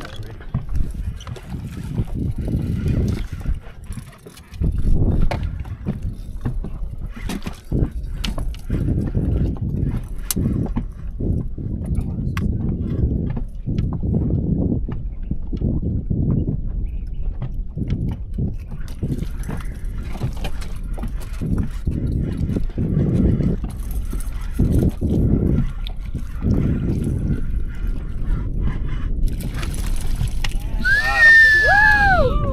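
Wind buffeting the camera microphone on an open boat deck, an uneven low rumble that gusts and drops away, with scattered light clicks and knocks.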